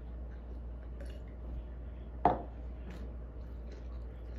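A purple plastic cup set down on a wooden table: one sharp knock about halfway through with a brief ring after it, over a steady low hum.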